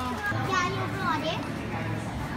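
Children's voices, talking and calling out, over a low steady hum.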